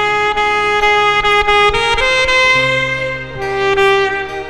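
Alto saxophone playing a slow ballad melody over a backing track: a long held note, a step up to a higher held note about two seconds in, then lower notes toward the end.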